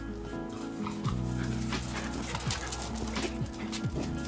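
Background music, with a Welsh Corgi's short vocal sounds over it a few times.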